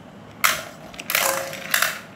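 Two Beyblade Burst tops, Zillion Zeus and Achilles, spinning in an aluminium pan and clashing against each other and the metal. There is one sharp clack about half a second in, then a rough rattling clatter from about one second to near the end, with a faint metallic ring.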